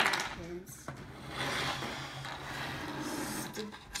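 A plastic Lego brick model being turned and slid across a wooden tabletop: a click at the start, then about two seconds of rubbing, scraping noise.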